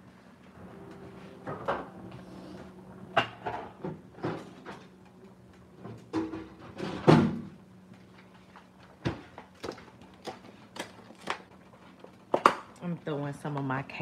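Kitchen handling noises: a string of sharp knocks and clicks from items being handled and set down, over a steady low hum.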